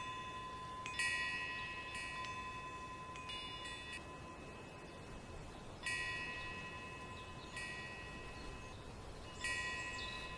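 Clear metallic chime tones, several notes sounding together, struck about six times at irregular intervals, each ringing out and fading over about a second. A faint steady high tone runs underneath.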